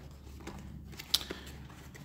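Cardboard box end flap being pried open by hand: faint handling and cardboard noise with one sharp click a little after a second in.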